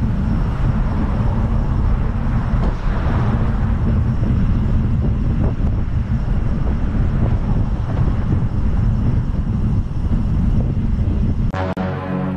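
Wind buffeting the microphone of a bike-mounted action camera while riding along a road, a steady low rumble with road and traffic noise mixed in. It cuts off abruptly near the end.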